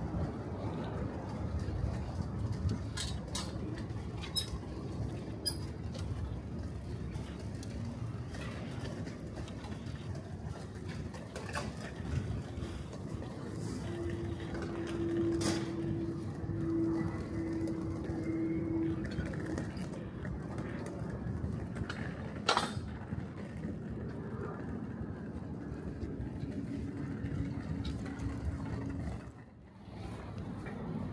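City street ambience: a steady low rumble of distant traffic and town noise, broken by a few sharp clicks and knocks. A faint humming tone comes and goes about halfway through and again near the end.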